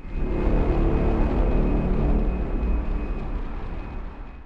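Cinematic logo intro sting: a dark, ominous low rumble with music, starting abruptly and slowly fading out near the end, with a faint high steady tone held over it.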